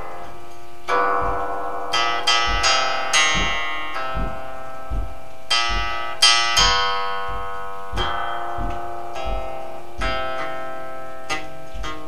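Guqin, a long seven-string Chinese zither, plucked in a slow improvisation. Single notes and quick pairs come about one a second, each ringing out and fading.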